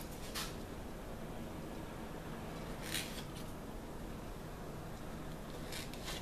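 Quiet room with a steady low background hum, broken by three brief, faint rustles or scrapes: one just after the start, one about three seconds in, and one near the end.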